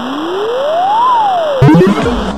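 DJ mix transition effect: a synthesizer tone sweeps up in pitch and then back down over a loud wash of noise, and a sharp hit with chords near the end brings in the next track.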